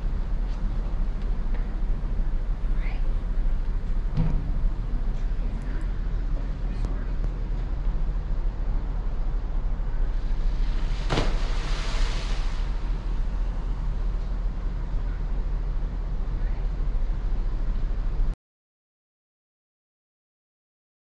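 Steady low rumble on a cruise ship's upper deck, with a short rushing swell about eleven seconds in; the sound cuts off abruptly near the end.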